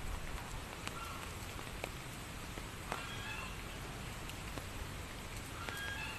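Steady light rain with scattered drips, and three short, high-pitched animal calls about a second in, about three seconds in, and near the end.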